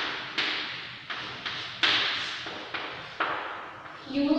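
Chalk tapping and scratching on a blackboard as words are written: a run of short, sharp strokes about two a second, each with a brief echo.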